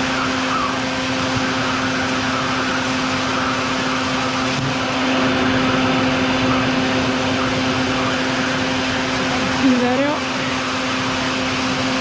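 Vacuum running steadily with a constant hum as its hose sucks up bald-faced hornets at the nest entrance. A short sweep in pitch cuts through the drone about ten seconds in.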